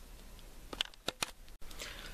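Quiet room tone with a few faint, short clicks a little under a second in, then a momentary dropout in the sound, like an edit cut.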